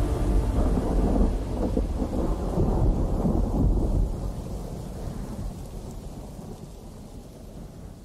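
Rain and thunder ambience: a low rolling thunder rumble over rain noise, fading away slowly.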